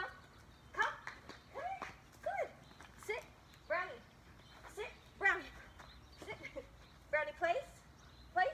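A woman's voice calling the puppy to her in about a dozen short, high-pitched syllables, coaxing rather than spoken sentences.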